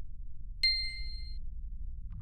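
A single bright ding, struck about half a second in and ringing for just under a second, over a steady low rumble: the sound effect of an animated logo reveal.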